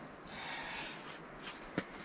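Faint background noise with one small click near the end.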